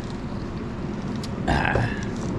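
Steady low rumble of road traffic from a nearby highway, with a short louder sound near the end.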